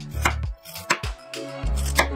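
Chef's knife slicing cabbage into thin shreds on a cutting board: a few sharp knife strikes against the board, one near the end the loudest, over background music.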